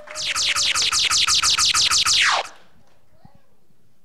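Electronic sound effect: a quick run of about fifteen falling sweeps, some seven a second, ending in one longer slide down after about two and a half seconds. It is louder than the speeches around it.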